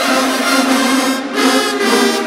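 Marching band brass section playing held chords, with a brief dip about halfway through.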